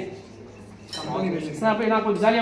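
A short, light clink about a second in, then a voice talking.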